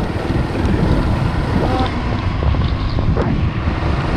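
Wind buffeting the microphone of a camera on a moving motorcycle, a steady low rumble with the motorcycle's running and tyre noise mixed in.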